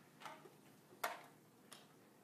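Three faint, short clicks in a near-quiet room, about a quarter second, one second and almost two seconds in, the middle one the loudest.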